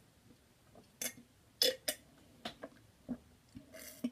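Gulps of milk swallowed from a mug: a run of short, separate swallowing sounds, loudest at two quick gulps in a row a little before the middle.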